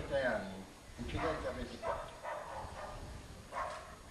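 A voice speaking in three short, indistinct bursts with pauses between them.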